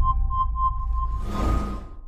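Electronic intro sound effects for a countdown: a deep low rumble under a quick run of short beeps, then a whoosh about a second and a half in as the countdown hits zero, fading out near the end.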